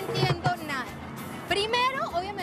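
Live vallenato music on accordion and hand drum, with a woman's voice speaking loudly over it.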